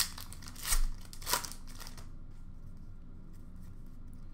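Trading cards being handled and slid against one another: two or three brief papery swishes in the first two seconds, then only quiet room noise.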